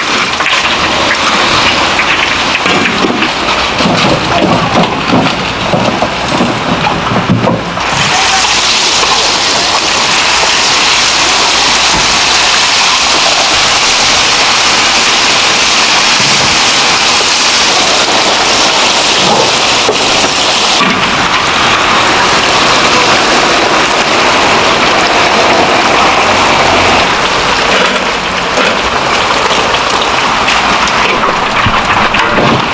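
Battered twigim deep-frying in a wide wok of hot oil, a loud, steady sizzle. About eight seconds in the sizzle jumps suddenly louder and hissier and stays that way.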